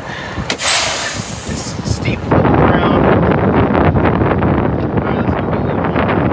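Detroit Diesel truck engine with its Jake brake (engine compression brake) engaged to slow the truck, heard from inside the cab. After a brief hiss about half a second in, it comes in loud at a little over two seconds as a rapid, rattling staccato.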